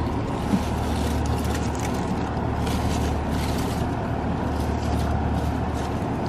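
Steady low background rumble with a faint hiss over it, even in level throughout, with no distinct event standing out.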